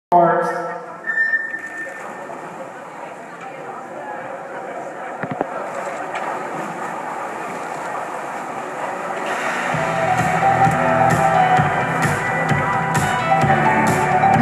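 Electronic race-start signal sounding briefly as the swimmers leave the blocks, followed by the echoing noise of an indoor swimming pool's crowd, which swells into shouting and cheering from about ten seconds in as the butterfly race goes on.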